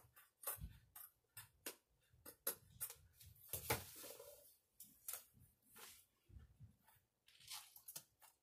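Faint series of quick scissor snips trimming the edge of a diamond painting canvas, followed by rustling and crinkling as the stiff canvas is handled and pressed down into a picture frame.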